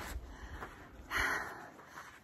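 A hiker's single heavy, noisy breath about a second in, from the effort of climbing with a loaded pack in heat and altitude.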